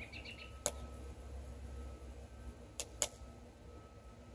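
Quiet background with a low rumble, broken by three short, sharp clicks: one just under a second in, then two close together about three seconds in.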